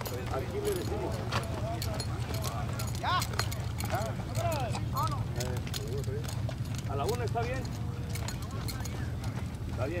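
Horses walking on a dirt track, their hooves making an uneven patter of soft clip-clops, with people talking in the background over a steady low rumble.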